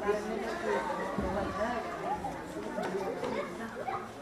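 Many voices talking over one another in a large hall, an unbroken background chatter of workers, with a few light clicks in the second half.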